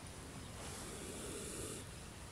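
A cobra hissing once, a single breathy exhalation lasting about a second that starts about half a second in, as it rears its head in defence.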